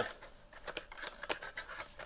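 Faint, irregular light clicks and scrapes, a few a second, with no speech.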